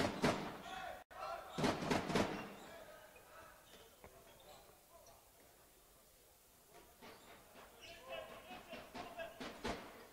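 A handball bouncing on a sports-hall court: a handful of short thuds, bunched about a second and a half to two seconds in and again near the end.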